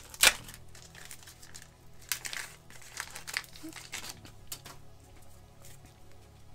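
Foil wrapper of a 1995 Upper Deck Collector's Choice basketball card pack crinkling as it is torn open and the cards are slid out. The loudest crackle comes just after the start, followed by softer scattered crinkles.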